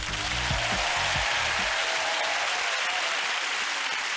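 Studio audience applauding steadily, with the tail of a music sting fading out in the first second and a half.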